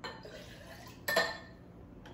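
Glassware and kitchen utensils being handled on a countertop: a small knock, then one sharp clink with a brief ring about a second in.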